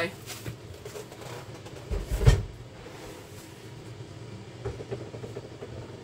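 A heavy cardboard case of bottled protein shakes set down with one solid thump about two seconds in, amid lighter rustling and handling sounds as items are moved about.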